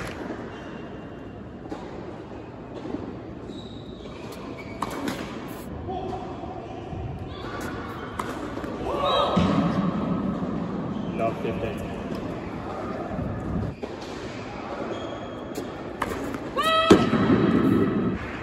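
Tennis ball knocks, racket hits and bounces on an indoor hard court, echoing in a large hall. A few sharp knocks come in the first six seconds and a loud one near the end.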